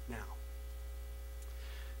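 Steady low electrical mains hum, with the tail end of a man's spoken word at the very start.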